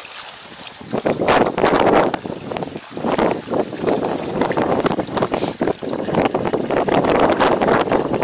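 Liquid herbicide poured from a plastic jug into the plastic chemical tank of a levee-coating machine: a steady splashing stream that starts about a second in and breaks briefly near three seconds.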